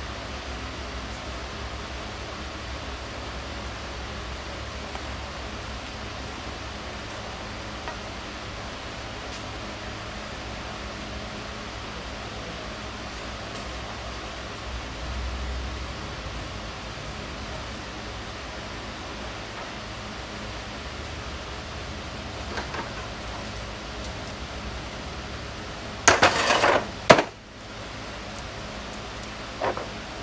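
Steady workshop background noise with a low hum, then about 26 seconds in a loud clatter of hard objects lasting about a second, followed by a few sharp knocks near the end.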